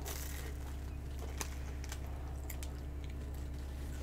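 Faint, scattered crunches and crinkles as a child bites a Weet-Bix wheat biscuit held in its wrapper, over a steady low hum.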